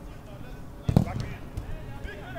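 A football struck on an artificial-turf pitch: one sharp thump about a second in, with a smaller knock just after, over players' distant shouts.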